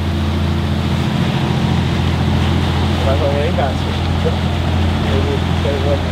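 Marine Trader trawler's diesel engine running steadily at cruising speed, a low even drone, with wind and water noise over it; faint voices briefly about halfway through and again near the end.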